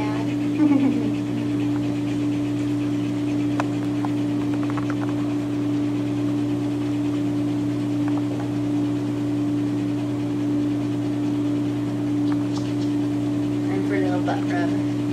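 A loud, steady mechanical hum at one unchanging pitch, with a short voice sound just under a second in.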